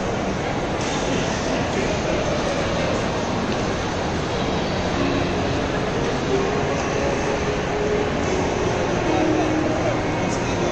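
Steady background hubbub of a busy shopping mall: indistinct crowd chatter over a constant wash of noise, with no single sound standing out.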